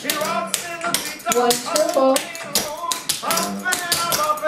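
Clogging taps on a wooden dance floor: quick, rhythmic metal-tap strikes of clogging basic steps, over a song with singing.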